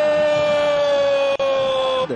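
A football commentator's long, drawn-out goal shout, 'gooool', held on one high note that sinks slowly in pitch. It breaks briefly a little past halfway and is cut off abruptly at the end.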